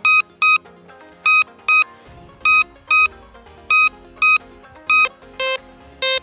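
C.Scope 6MX analog metal detector giving short, shrill high-pitched beeps in pairs, about a pair a second, as the coil sweeps back and forth over a piece of aluminium foil with the discrimination turned low. Near the end the beeps drop to a lower mid tone as the discrimination knob is turned up and the foil moves into the mid-tone range.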